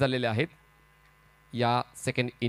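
A male commentator's voice, broken by a pause of about a second in which only a faint steady electrical hum from the commentary audio is heard.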